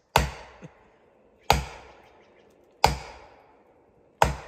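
Three heavy, evenly spaced blows, about one every second and a half, each cracking sharply and then ringing off briefly: a felling wedge being hammered into a tree's back cut to tip it over.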